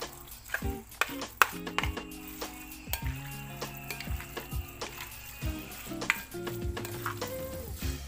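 Plastic spoon scraping wet cooked sago pearls off a plastic plate into a glass bowl of gelatin cubes: repeated sharp clicks and taps with wet, squishy scraping. Background music with held notes plays underneath.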